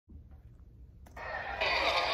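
Faint low room hum, then a click about a second in as the TV episode's soundtrack starts, building quickly into a steady noisy wash of crowd-like sound.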